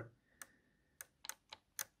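Faint, irregular plastic clicks, about half a dozen, as the take-up reel of a Technics RS-X101 cassette mechanism and its soft, translucent plastic drive gear are turned slowly by hand. The gear has lost several teeth.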